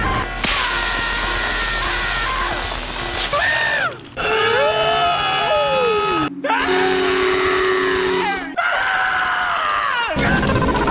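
Cartoon dog screaming in a string of short clips cut together: loud, high-pitched screams and wails over cartoon music. The sound breaks off abruptly at each cut, and one drawn-out cry falls in pitch in the middle.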